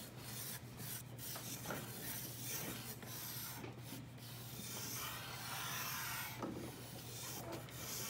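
Pencil scratching across thick drawing paper in long, continuous sketching strokes.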